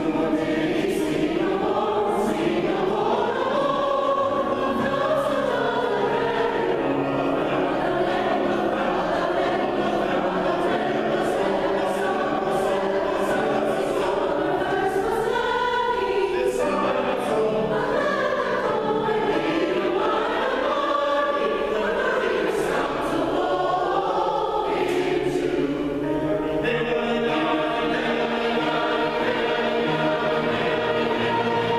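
A mixed community choir of men and women singing a choral piece in parts, with piano accompaniment.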